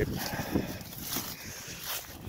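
Footsteps through dry, frosty grass: a few soft, irregular steps over an even rustle.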